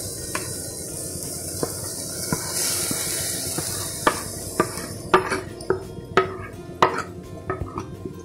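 Wooden spatula scraping thick ground masala paste off a plastic plate into a clay cooking pot, over a steady hiss. From about four seconds in come a series of sharp taps, roughly two a second, as the spatula knocks against the plate and the pot's rim.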